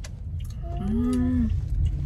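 Low, steady cabin rumble of a moving car. About a second in, a short hummed voice-like sound rises slightly in pitch and falls away.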